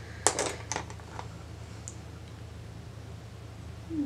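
A few quick clicks and rattles in the first second or so as makeup brushes and containers are handled on a table, then only a faint low steady hum.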